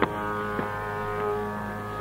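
Carnatic music in raga Yadukulakamboji: bamboo flute holding steady notes over a drone, with a light drum stroke at the very start and another about half a second in.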